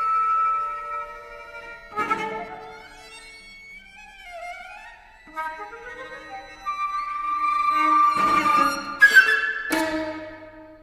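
Flute and string trio (violin, viola, cello) playing contemporary chamber music. Held tones are broken by a sharp accented attack about two seconds in, and sliding pitches follow in the middle. A long held note then swells into sharp accented attacks near the end.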